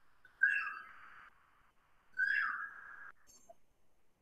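Whiteboard marker squeaking across the board in two strokes, one about half a second in and one just after two seconds. Each is a high squeal over a scratchy hiss, lasting about a second.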